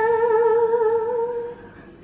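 A woman's voice holding the sung last note of a "ta-daaa", steady in pitch with a slight wobble, fading out about one and a half seconds in.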